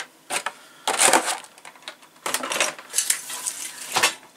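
Clear rigid plastic blister packaging of kit parts being handled: an irregular series of light clattering knocks and crackles, loudest about a second in.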